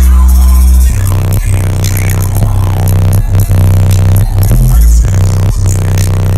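Bass-heavy electronic music played through a car's American Bass 10-inch subwoofers at competition volume, measuring around 135–139 dB inside the cabin. A single held deep bass note for about the first second gives way to a pulsing beat with shifting bass notes.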